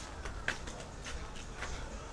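Quiet outdoor background sound: a steady low rumble with a few soft taps, near the start, about half a second in and again near a second and a half.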